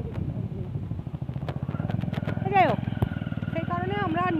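Motorcycle engine running steadily under way, a fast even pulsing, with wind on the microphone. A brief loud sound falling in pitch comes about two and a half seconds in, and a woman starts speaking near the end.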